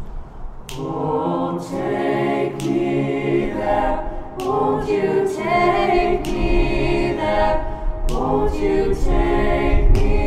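A cappella choir singing held chords, phrase after phrase, with short breaks between them.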